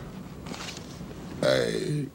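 A person's short, loud vocal sound about a second and a half in, falling in pitch for about half a second, over faint room noise.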